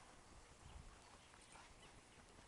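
Near silence: a faint low rumble with a few soft ticks.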